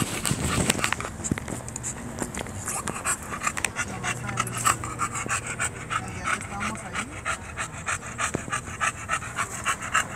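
English bulldog panting with its mouth open, in a quick, even rhythm of breaths.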